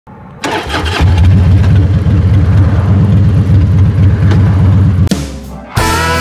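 Motorcycle engine starting and then running with a loud, uneven low rumble. It fades a little after five seconds, and electric-guitar music comes in just before the end.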